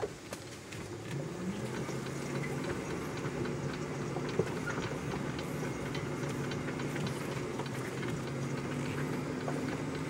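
Electric Polaris utility vehicle's 72-volt AC drive motor running with a steady low hum that rises in pitch about a second in and then holds, with light ticks over it.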